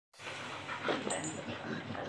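Quiet, irregular sounds from a Labrador being petted as it rolls over on a hard stone floor, with a few short louder scuffs around the middle.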